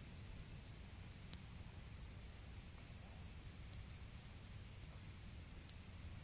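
A cricket chirping steadily, about two short, high chirps a second, over a faint low hum.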